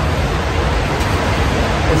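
Heavy, windy rainstorm downpour: a loud, steady rushing of rain and wind.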